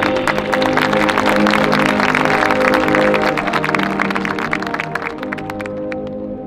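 Marching band holding sustained chords over rapid percussion, the percussion stopping abruptly just before the end while the chord rings on.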